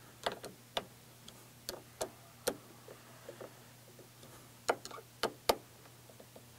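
Allen key clicking against a chainsaw-mount clamp as the clamp is tightened by hand: a string of sharp, irregularly spaced clicks.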